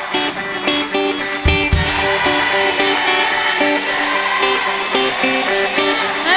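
Pop-rock band playing an instrumental break: an electric guitar picks a repeated riff over a steady drum beat, with no singing.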